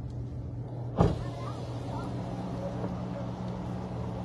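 Steady low hum of a car heard from inside the cabin, with a sharp click about a second in, after which a steady hiss of outside noise joins the hum.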